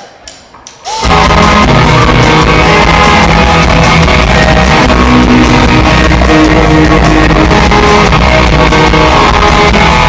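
Live rock band of electric guitars and drums coming in all at once about a second in, then playing on loud and steady.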